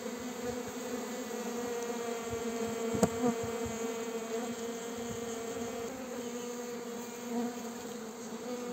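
A dense cloud of uruçu-amarela stingless bees (Melipona) buzzing in a steady drone around the top of an open wooden hive box, the sound of a strong, populous colony. A single sharp click about three seconds in.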